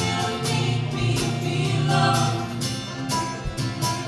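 Live acoustic band playing a song: a woman singing, possibly with harmony voices, over strummed acoustic guitar, fiddle and upright bass, with a steady strummed beat.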